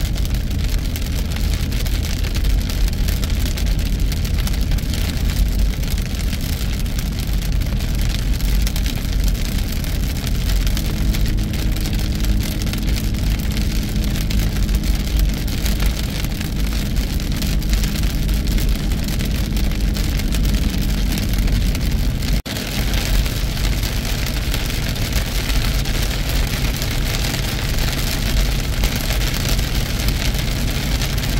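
Heavy rain beating on a truck's windshield and roof, heard from inside the cab, over the steady hum of the engine and tyres on a wet road. There is a short break in the sound a little past two-thirds of the way through.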